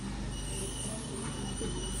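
Steady background hum of a clinic waiting room with a thin, steady high-pitched whine over it.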